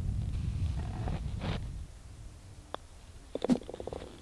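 Low wind rumble on the microphone for the first couple of seconds, then a single sharp click of a putter tapping a golf ball about two-thirds in, and a short cluster of clicks near the end as the ball goes into and is taken out of the cup.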